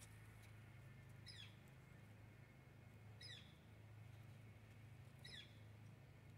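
Near silence with a faint low hum, broken three times, about two seconds apart, by a bird's short call that falls in pitch.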